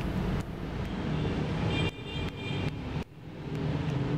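Low, steady rumbling background noise with two abrupt drops in level, about two and three seconds in.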